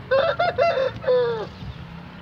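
Fighting rooster (gamecock) crowing once at close range: a quick run of short notes, then a long drawn-out note that falls off about a second and a half in.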